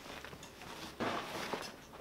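Fabric rustle of a backpack being handled and pulled onto the shoulders, a brief scuffing burst about a second in.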